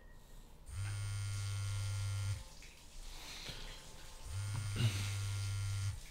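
Mobile phone on vibrate buzzing twice, each buzz about a second and a half long, signalling an incoming call.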